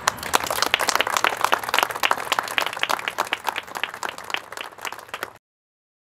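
A group of people applauding, with individual hand claps coming thick and fast for about five seconds. The applause cuts off suddenly near the end.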